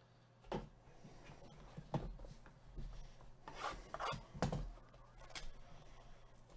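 Gloved hands handling sealed cardboard trading-card boxes: a few light knocks of the boxes on the table, about half a second in, around two seconds and around four and a half seconds, with rubbing and rustling between them.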